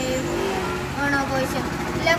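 A boy speaking steadily in Malayalam, reciting a speech, with a low steady hum running underneath.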